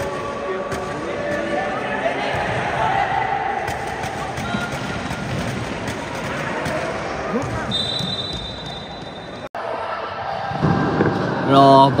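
A futsal ball is kicked and bounces on an indoor hard court, with short knocks over a haze of echoing spectators' voices. A steady high tone sounds for about two seconds past the middle. The sound cuts out for an instant, then a man's voice comes in close near the end.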